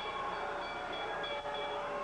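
Wrestling ring bell ringing on and on, several high bell tones held steadily. It is being rung continuously to call off an attack that goes on after the match has ended.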